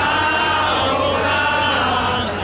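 Many voices singing a hymn together, with a choir-like chant that goes on throughout.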